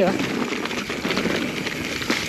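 Mountain bike rolling down a dirt singletrack: a steady rush of tyre noise on dirt and leaf litter mixed with the bike's chassis rattle.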